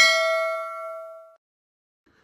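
Notification-bell 'ding' sound effect from a subscribe-button animation, struck just before and ringing with several bright tones that fade away about a second and a half in.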